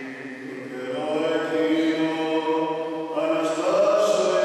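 A priest's solo male voice chanting the Gospel reading in Byzantine-style Greek Orthodox recitative, with long held notes. It grows louder about a second in and steps up in pitch a little after three seconds.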